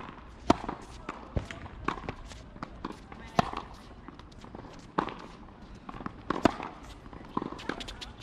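Tennis balls being struck by rackets and bouncing on a hard court: sharp pops roughly every second, some loud and close, others fainter.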